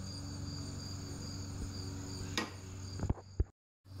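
Steady, high-pitched insect chirping, like a cricket, over a low hum. There is a sharp click about two and a half seconds in and a couple of knocks just after three seconds, then the sound cuts off.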